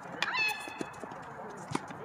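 Tennis ball being played in a doubles rally on a hard court: a few sharp pops of racket strikes and bounces, spaced about a second apart. A short high-pitched squeal comes about half a second in.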